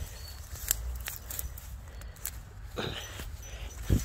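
Tall grass and leafy plants rustling and brushing as someone walks through them, with a few sharp clicks. A short call sounds about three seconds in.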